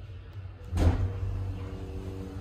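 Stannah passenger lift car setting off: a single clunk a little under a second in, then a steady low hum with faint steady tones as the drive runs.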